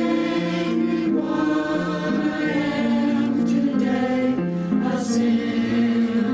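A small mixed church choir singing a hymn, the voices holding long notes and moving in steps from one pitch to the next.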